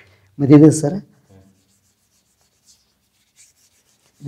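A man's voice saying one short word about half a second in, then near silence with a few faint soft ticks.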